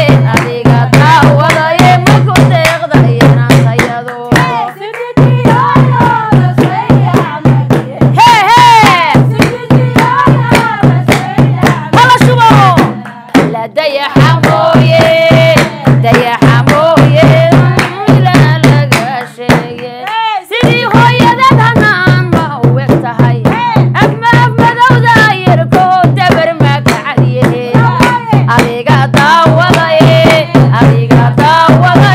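Women singing Somali buraanbur to a fast, even beat of drum strokes and hand claps. There are a few brief breaks in the singing.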